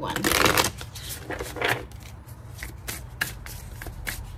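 A deck of oracle cards being shuffled: a dense, fast flutter of cards just after the start, then scattered sharp clicks and flicks of cards for the rest of the time.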